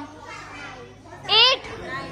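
Speech: a low hubbub of children's chatter, then one short, high-pitched spoken word about a second and a half in.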